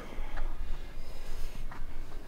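A weightlifter breathing hard through the nose under exertion during a set of reps, over a low, steady room rumble.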